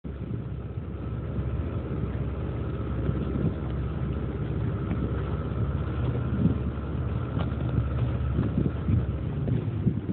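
Small tiller-steered outboard motor running steadily while the boat is under way, with wind on the microphone.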